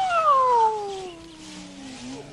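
A long, drawn-out cat meow, already under way, gliding slowly down in pitch and fading over its second half.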